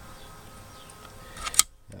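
Faint steady hiss of room tone, with one short click near the end.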